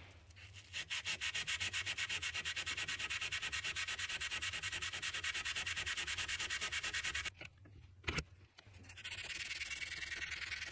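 Stainless steel pen barrel being sanded by hand with an abrasive in rapid, even back-and-forth strokes, which stop a little after seven seconds in. After a short pause and a single knock, a softer, smoother rubbing starts near the end.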